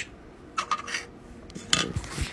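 Two brief rubbing scrapes, one under a second in and one near the end, from a clear plastic Petri dish being handled on a tabletop.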